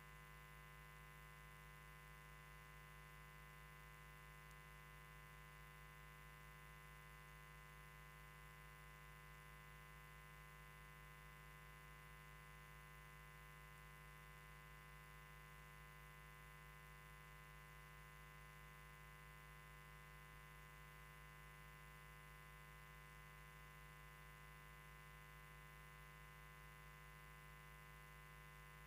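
Near silence, with only a faint, steady hum that does not change.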